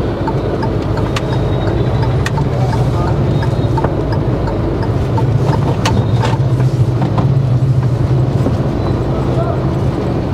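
Steady low hum of a car's engine and road noise heard from inside the cabin at slow speed, with scattered light clicks.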